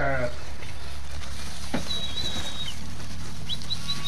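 Steady low background rumble with faint, thin, high chirps from a small bird about halfway through and again near the end, and a single click shortly before the first chirps.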